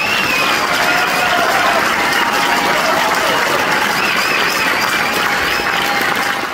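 Theatre audience applauding loudly at the end of a song, steady and dense throughout, with wavering whistles riding over the clapping.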